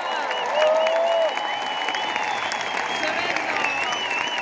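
Stadium concert crowd applauding and cheering, with whistles and individual shouts standing out. A loud held cry comes about half a second in.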